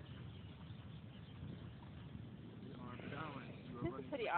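Low, steady rumble of wind on the microphone, with a faint voice speaking near the end.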